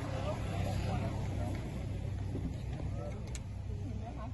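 Steady low rumble of a running engine under faint, indistinct voices, with one short click near the end.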